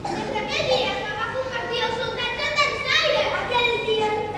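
Speech only: children's voices speaking lines of dialogue.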